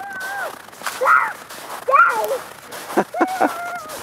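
A toddler's high-pitched babbling: four short vocal sounds with gliding pitch, the last one longer, with a few crunching footsteps on packed snow and ice between them.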